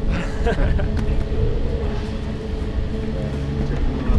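A steady mechanical hum over a low rumble, holding one even pitch throughout, with a few brief voices in the first second.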